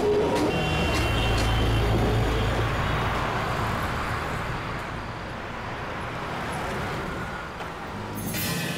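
Busy city street traffic: a steady low rumble of engines and tyres, heaviest in the first few seconds and easing off somewhat after that.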